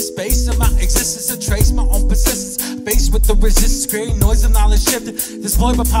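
Hip-hop track: a male rapper delivering a fast verse over a beat with deep bass notes about once a second.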